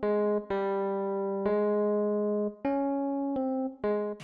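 Intro music: a slow melody of single notes on a plucked string instrument, about six notes, each ringing on until the next.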